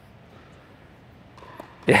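A tennis ball struck by a racket on an overhead, a faint single pop about one and a half seconds in, over quiet room tone in a large hall.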